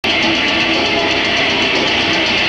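Heavy metal band playing live: a loud, steady wash of distorted electric guitar, heard through a muddy audience recording.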